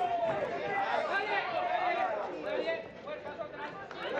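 Several voices talking over one another, chatter from people in the hall, easing off in the last second or so.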